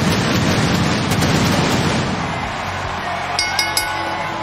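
Stage pyrotechnic flame jets firing with a loud rushing burst, over a cheering arena crowd and heavy rock entrance music. The noise eases after about two and a half seconds.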